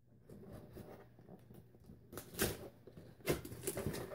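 Cardboard box being pried and torn open by hand: scraping and rustling of the flaps, with sharp tearing or popping of the cardboard a little past two seconds and again past three seconds, the loudest sounds.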